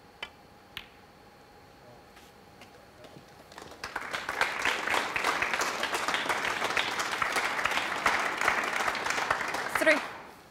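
Snooker cue tip striking the cue ball, followed by the click of ball on ball, then an audience applauding from about three and a half seconds in, a steady clapping that carries on to the end.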